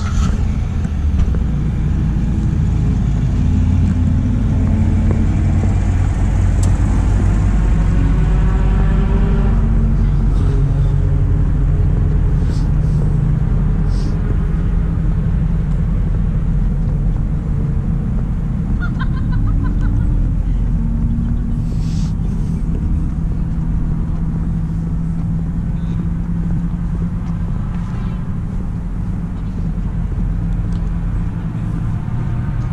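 Racing vehicles' engines on a race track, a continuous drone with engine notes that rise in pitch as they accelerate, most plainly in the first ten seconds and again about two-thirds of the way through.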